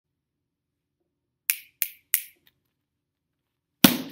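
Three quick finger snaps, about a third of a second apart, followed near the end by one louder sharp smack.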